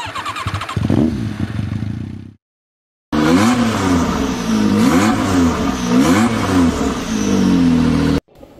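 Sports car engine sound effect revving: the pitch rises about a second in, the sound cuts out briefly, then it comes back loud and revs up and down over and over.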